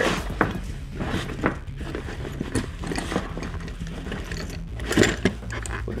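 Metal hand tools clinking and knocking against each other as they are slid into the pockets of a canvas tool bag, with some fabric rustle. The knocks come irregularly, the loudest about five seconds in.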